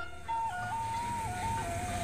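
Background music: a slow melody of held notes stepping up and down between two pitches over a low sustained bass.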